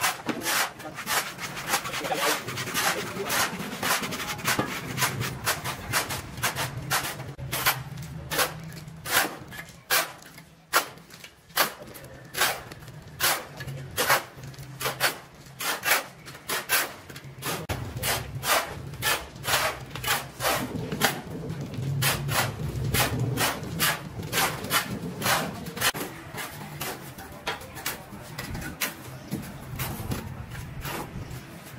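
Steel shovels scraping and crunching into a dry mix of cement, sand and gravel on a concrete floor, stroke after stroke at an uneven pace of about one or two a second, as concrete is mixed by hand.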